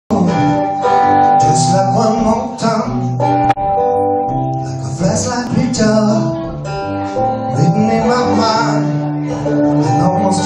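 Solo blues guitar played live on a drobo guitar: steady bass notes under a melody of bending, wavering higher notes. A sharp click about a third of the way in.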